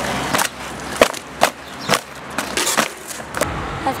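Cardboard produce boxes being stamped flat underfoot on pavement: a series of sharp crunching stomps, roughly one every half second to a second.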